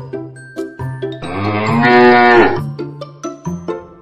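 A cow mooing once, a long call that rises and then falls in pitch, over a light plucked background tune.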